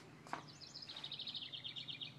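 A bird's fast trill: a quick, even run of high chirps that falls slightly in pitch, starting about half a second in and lasting well over a second.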